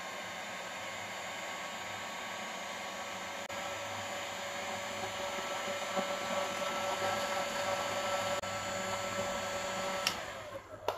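Electric heat gun running, its fan blowing hot air with a steady hum over the rush of air, shrinking heat-shrink tubing onto a speaker connector. It grows a little louder toward the end and stops right at the end.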